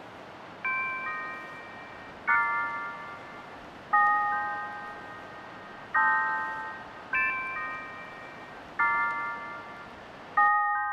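Film score music: six ringing chords of bell-like tones, each struck and then fading, about every one and a half seconds, over a steady background hiss.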